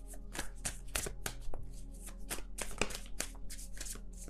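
Tarot cards being shuffled by hand: a quick, irregular run of card flicks and taps.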